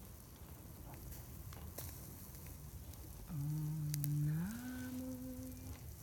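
Faint crackling and sizzling from frankincense resin on a smouldering charcoal disc, then, about three seconds in, a voice begins a slow Buddhist mantra chant, holding one low note and then sliding up to a higher held note.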